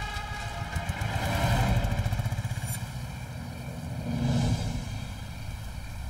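Motor vehicle engine rumbling, swelling louder about two seconds in and again about four and a half seconds in.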